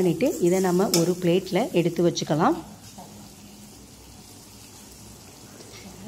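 Thick masala gravy frying with a soft steady sizzle in a stainless steel kadai as a steel ladle stirs it. A woman talks over it for the first two and a half seconds; after that only the quiet sizzle remains.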